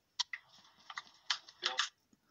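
A handful of short, sharp clicks, irregularly spaced, with near silence between them.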